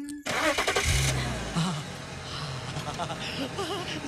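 A car engine is started with the ignition key. After a burst of noise it catches about a second in, then keeps running.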